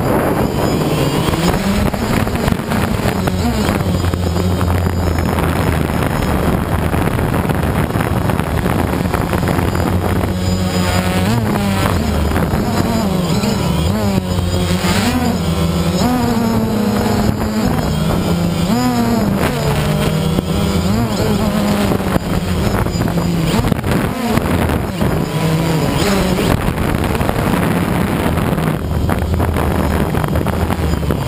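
DJI Phantom quadcopter's motors and propellers running, heard loud and close from the camera on the drone itself. The hum wavers up and down in pitch as the motors keep changing speed.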